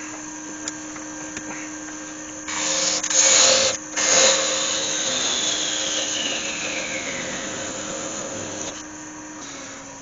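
Nova Galaxi DVR wood lathe running while a parting tool cuts off a small spinning yew workpiece, a loud rasping cut lasting about a second, starting about two and a half seconds in. After the cut a whine falls steadily in pitch and fades over several seconds.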